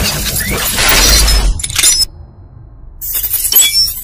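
Logo-reveal sound effect of glass shattering: a dense crashing rush with a deep boom about a second in that cuts off at two seconds, then a second burst of tinkling shards near the end.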